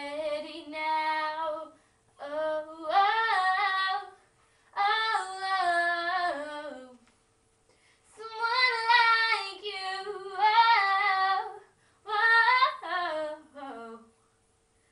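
A teenage girl singing unaccompanied in a small room, in about five sustained phrases separated by short breaths, the last phrase sliding down in pitch near the end.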